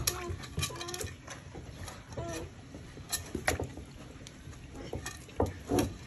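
A bear cub pawing and splashing water in a metal pot, with irregular splashes and knocks of the pot against the wooden deck, about seven over a few seconds.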